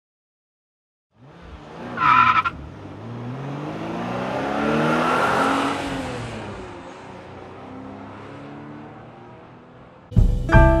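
Car sound effect: a short tire screech about two seconds in, then an engine accelerating past, rising in pitch and loudness and then falling away as it fades.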